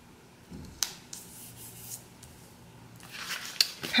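Paper sticker being handled and pressed onto a planner page: light rubbing and rustling of paper with a few small clicks, the sharpest about a second in, likely from fingernails on the sticker.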